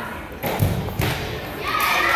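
Two dull thuds about half a second apart, of the kind made when a body or feet hit padded gymnastics equipment. Voices start up near the end.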